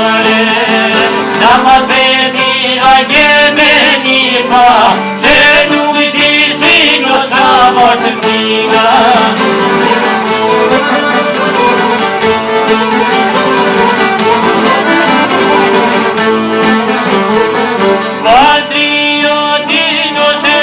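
Albanian folk song: a man sings to two long-necked plucked lutes. His voice drops out in the middle for an instrumental passage of the lutes and comes back with a rising phrase near the end.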